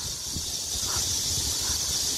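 A chorus of cicadas buzzing in a steady, high-pitched hiss, with a low rumble underneath from walking.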